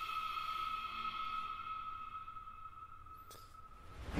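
Horror film score: a single held high ringing tone with faint overtones, slowly fading over the few seconds.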